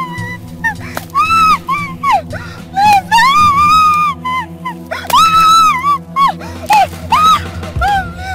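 Background film score with a steady low drone. Over it comes a run of high-pitched whining cries, each rising, holding and falling away within about a second.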